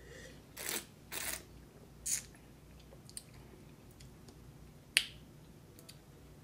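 Faint wine-tasting mouth noises: two short noisy slurps about half a second apart near the start and a brief hiss about two seconds in. A single sharp click comes about five seconds in.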